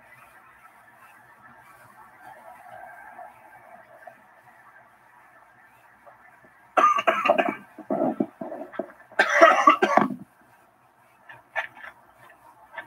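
A person coughing in two loud fits, the first about seven seconds in and the second about two seconds later, each a cluster of rough coughs. Faint steady background noise lies under the quieter first half.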